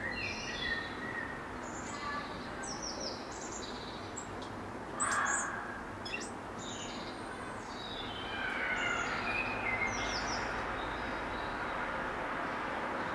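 Songbirds singing, a run of short, high, thin whistled phrases and trills, over a steady background hum. A brief louder rush of noise about five seconds in.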